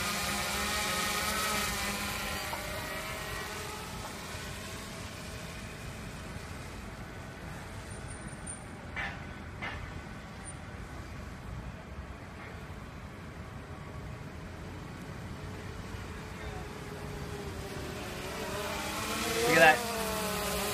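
DJI Phantom 2 Vision quadcopter's electric motors and 9-inch propellers in flight, a steady hum of several tones. It fades after the first few seconds and grows louder again near the end, rising in pitch.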